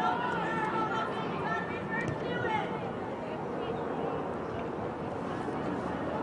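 Indistinct chatter from sideline spectators, several voices overlapping, with no clear words. The voices are busiest in the first half and thin out later, over steady outdoor background noise.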